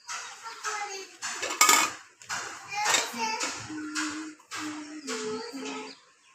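A young child's voice chattering in short, high-pitched bursts, with a sharp clink of kitchenware about a second and a half in.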